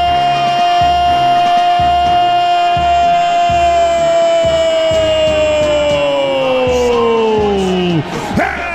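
Radio commentator's drawn-out goal cry, one long held note that sinks in pitch over the last two seconds, over a music bed with a steady beat.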